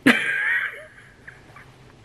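A woman's high-pitched squealing laugh: one sudden loud burst with a wavering pitch right at the start, trailing off within about a second.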